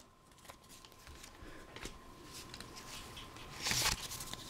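Faint rustling and clicks of Pokémon trading cards and a torn foil booster-pack wrapper being handled, with a louder, brief rustle near the end as the stack of cards is drawn out.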